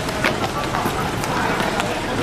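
Outdoor street ambience: indistinct voices of people nearby over a steady low rumble.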